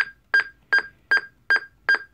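Kenwood mobile two-way radio beeping once for each press of its channel button as it steps down through its channels: six short, identical high beeps, evenly spaced at nearly three a second.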